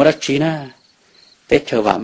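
A man narrating a story in Hmong, pausing for a little under a second in the middle. Faint cricket chirping runs in the background.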